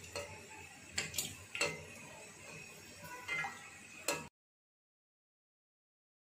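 A few light clicks and knocks of a utensil against the wok while the hot oil is stirred around a frying gulab jamun. About four seconds in, the sound cuts out to complete silence.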